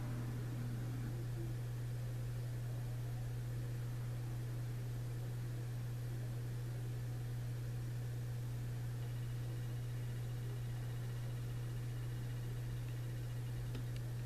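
Steady low hum with an even hiss on the broadcast audio feed, with no commentary, after the call has been handed back to the studio. A faint thin high tone comes in for a few seconds near the end.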